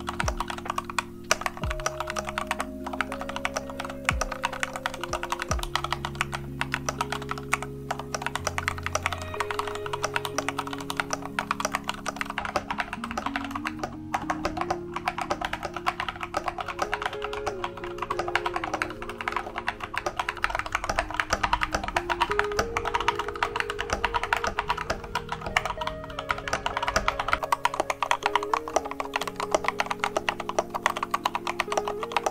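Continuous fast typing on a LOFREE 1% transparent mechanical keyboard fitted with stock Kailh Jellyfish switches on a desk mat: a dense, unbroken run of key clacks, with soft background music underneath.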